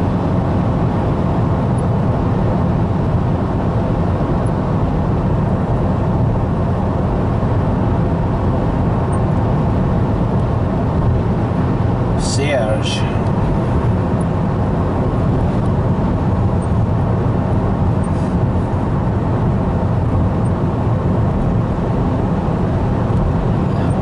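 Steady road and engine noise inside a car cruising at highway speed, with one brief, higher sound about halfway through.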